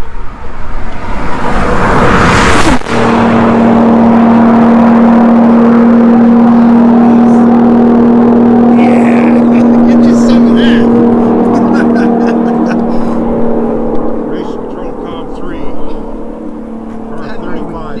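Nissan GT-R racing past at very high speed. The rush of engine and wind builds and cuts off sharply about three seconds in. A steady, loud engine note follows as the car speeds away, fading after about twelve seconds.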